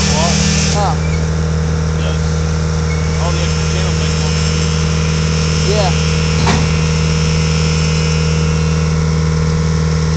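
An engine idling steadily, heard from inside a vehicle's cab, with faint short squeaks and a single sharp click about six and a half seconds in.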